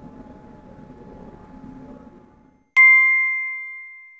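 A single bright bell-like ding that strikes suddenly near the end and rings away over about a second and a half: an outro sound effect. Before it, faint room noise with a thin steady hum.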